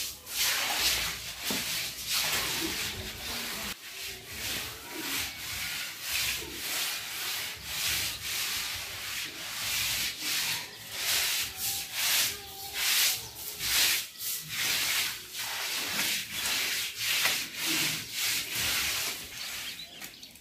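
Soft grass broom swishing in quick, repeated strokes, about one and a half a second, across a floor wet with thin cow-dung slurry, spreading it as a fresh plaster coat.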